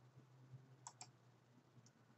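Two faint computer mouse clicks in quick succession about a second in, then a softer single click near the end, over a low steady hum.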